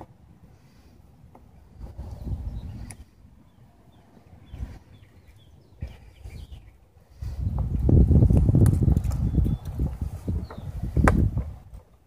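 Handling noise from a plastic cold-air-intake airbox as push pins are pressed into it: low rustling and knocking, loudest in the second half, with a sharp click a second before the end. Birds chirp faintly in the middle.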